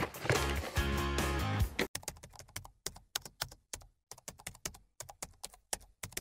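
Background music that stops about two seconds in, followed by a rapid, irregular run of computer-keyboard typing clicks: a typing sound effect for text being typed out on screen.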